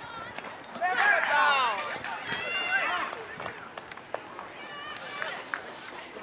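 People shouting out on a baseball field, with wordless calls that rise and fall in pitch. The loudest calls come in the first half, with a shorter one near the end.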